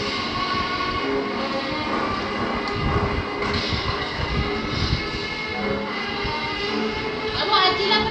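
Background soundtrack audio made of several steady held tones over a low rumble, with a short high voice about seven and a half seconds in.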